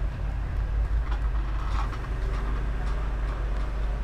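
Market stall background noise, carried by a steady low rumble, with a few faint clicks and rustles.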